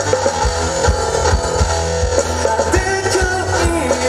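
A live band playing a song: a male singer's voice over electric guitar, a drum kit keeping a steady beat, and keyboards.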